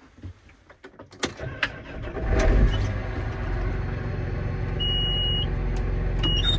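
John Deere 8330 tractor's diesel engine starting about two seconds in and settling into a steady idle, after a few clicks. A single electronic beep sounds from the cab about five seconds in.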